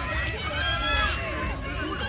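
Several people's voices overlapping, talking and calling out at once, over a steady low rumble.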